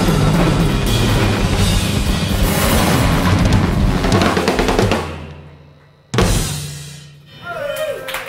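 Two acoustic drum kits played together in a loud, busy passage of bass drum, snare and cymbals that dies away about five seconds in, followed by one last loud hit that rings out and fades. Voices come in near the end.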